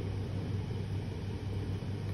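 A steady low hum with a faint even hiss: background noise in a pause between speech.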